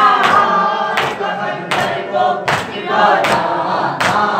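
A group of mourners chanting a noha together, with rhythmic hand-strikes of matam (chest-beating) about every three quarters of a second, five strikes in all.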